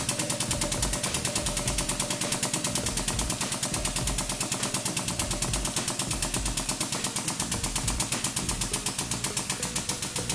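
Hydraulic press running as its ram presses down, with a rapid, even clicking of about eight beats a second from the machine.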